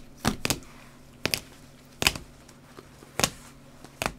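Hard plastic trading-card holders clacking against each other as a stack of cased cards is flipped through by hand: about five sharp clicks at uneven intervals.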